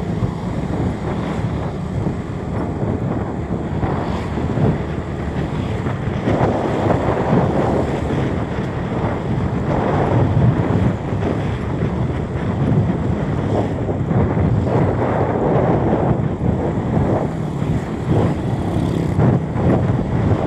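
Wind buffeting the microphone of a moving vehicle, noisy and gusting, over a steady low engine hum.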